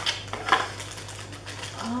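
Hands rummaging in a cardboard box and handling a small plastic-bagged item: scattered rustles and clicks, with one sharp knock about half a second in.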